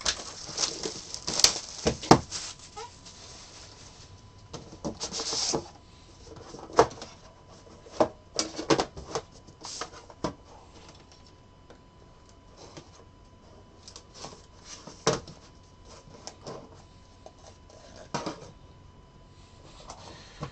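Hands unsealing and opening a trading-card hobby box: plastic wrap crinkling and tearing in the first few seconds and again about five seconds in, then scattered light clicks and knocks as the metal box tin and the card case inside are handled and opened.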